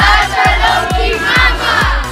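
A large group of children shouting together, over background dance music with a steady beat of about three thumps a second.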